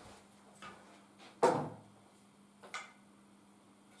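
A sharp knock about one and a half seconds in, with a lighter click before it and another after, as a pool table's mechanical bridge (rest) is laid down on the table. A faint steady hum runs underneath.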